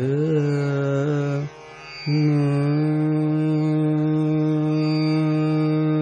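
Male Hindustani classical vocalist singing raga Bhimpalasi: a short phrase gliding up and down, a brief pause about a second and a half in, then one long steady held note.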